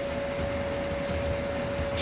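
Steady background hum and hiss with a constant mid-pitched tone, unchanging throughout; no distinct events.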